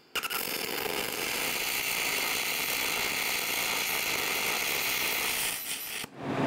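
MIG welding arc on aluminum with heavy 1/16-inch 5356 wire. It starts just after the beginning, runs as a steady crunchy crackle and cuts off near the end. The crunchy sound and heavy spatter are the sign of too much wire feed for the voltage: the arc is not getting enough voltage for the thick wire.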